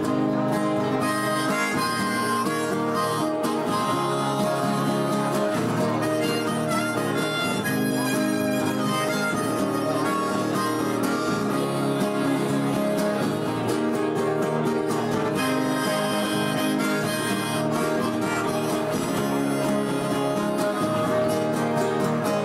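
Instrumental intro of a live acoustic song: two acoustic guitars strumming steadily, with a harmonica carrying the melody over them.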